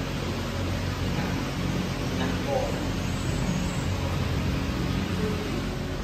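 Steady workshop background hiss and hum, with faint indistinct voices in the distance.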